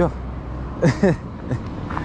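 Steady low rumble of street traffic, with one short voice cutting in about a second in.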